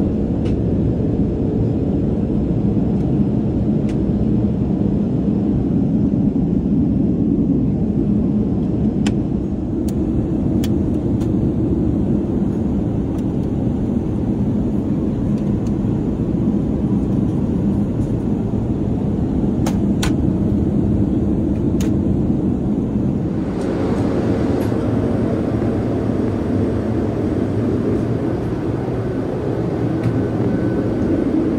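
Steady low rumble of cabin noise inside a Boeing 787 airliner, with a few faint clicks. About three-quarters of the way through it gains a brighter hiss.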